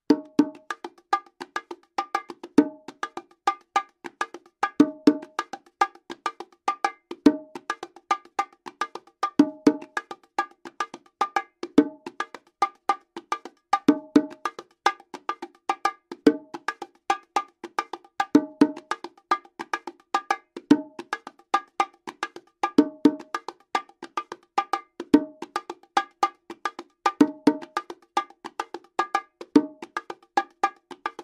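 LP bongos played by hand in a steady martillo-style pop groove at normal speed. A continuous run of quick open tones and slaps starts right at the beginning, with a heavier accent repeating about every two and a quarter seconds.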